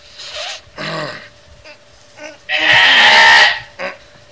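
A goat bleating: one loud, harsh bleat lasting about a second, starting about two and a half seconds in, after a few fainter short sounds.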